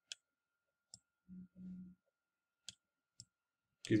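Four faint, sharp clicks, spaced irregularly, from an input device used to write numbers on a computer screen. A man gives a brief low hum twice in the middle.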